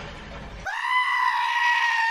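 A goat bleating: one long call that starts abruptly under a second in and slides down in pitch as it cuts off.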